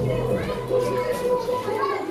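Several people talking over background music with long held notes.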